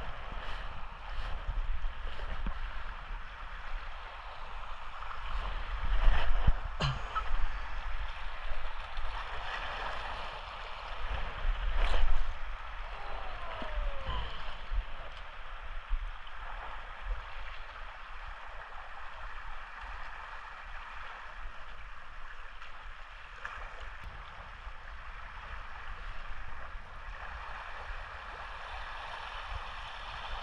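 Small waves washing and gurgling against shoreline rocks, with wind buffeting the microphone in low surges, loudest about six and twelve seconds in.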